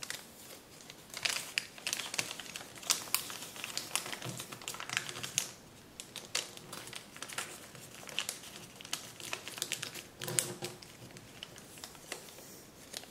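Kraft paper being folded and creased by hand: irregular crinkles and sharp crackles of the stiff paper, loudest about three seconds and ten seconds in.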